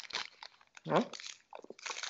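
Foil wrapper of a chocolate bar crinkling and crackling as it is picked open by hand, in many small rapid clicks. A brief voiced murmur about a second in.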